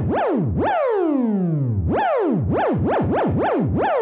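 Buzzy modular-synthesizer tone whose pitch is swept by a cycling Make Noise MATHS function, in repeated swoops that jump up fast and glide back down. The fall time is being slowly modulated by a second MATHS channel, so one early downward glide stretches to about a second and the later swoops come short and quick.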